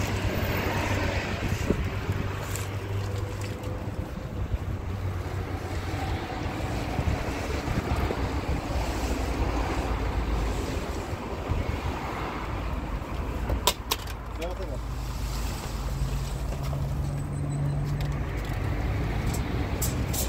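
A large sheet of clear plastic sheeting rustling and flapping in the wind as it is unrolled from its roll, with wind buffeting the microphone. A low engine hum runs underneath, rising slightly in pitch in the second half.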